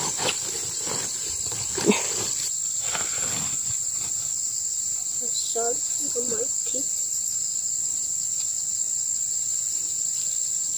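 Insects droning steadily at a high pitch, with rustling of leafy greens being picked and handled in the first few seconds and a single sharp knock about two seconds in.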